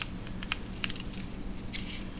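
Light clicks and scrapes of a small cardboard matchbox being handled and its tray slid open, a few sharp ticks spread through the two seconds, over a faint low steady hum.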